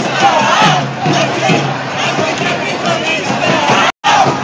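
A crowd of marching protesters shouting and chanting, many voices overlapping at once. The sound cuts out for a split second just before the end.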